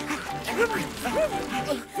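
Cartoon soundtrack: background music with a steady repeated note, and short rising-and-falling vocal sounds from the animated characters.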